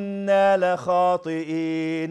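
A man reciting a Qur'an verse in Arabic in a chanted, melodic style, holding long steady notes across several phrases with short breaks between them.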